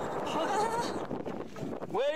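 A steady rushing noise with a brief wavering voice-like call about half a second in, the rush dropping away near the end.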